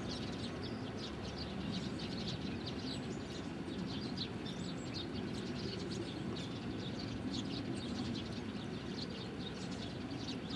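Small birds chirping in many short, high notes, over a steady low background rumble.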